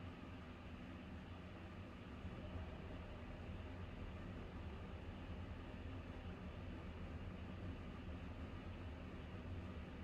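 Quiet room tone: a steady low hum with faint hiss and no distinct events.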